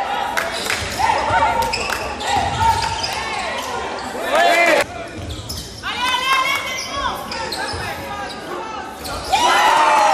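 Basketball game on an indoor court: a ball bouncing, sneakers squeaking briefly and repeatedly on the floor, and players' voices, all echoing in a large hall.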